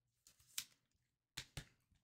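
Near silence, broken by three faint clicks of trading cards being handled: one about half a second in, then two close together a second later.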